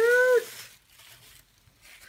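A short high-pitched 'aww' from a woman's voice, rising and falling in the first half-second, then soft rustling of tissue paper being lifted and pushed aside in a cardboard box.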